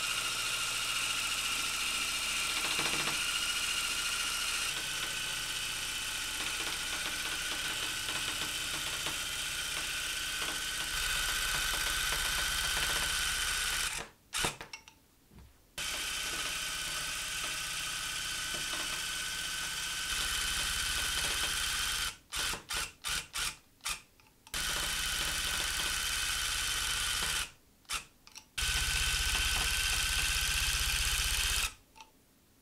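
Electric handheld tufting gun running, punching yarn through the backing cloth with a steady high-pitched whir. It runs in long stretches, stops briefly about halfway, then gives a string of short stop-start bursts past two-thirds and pauses once more near the end.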